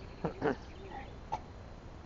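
A domestic cat meows once, briefly, about a quarter second in, followed by a couple of faint short chirps.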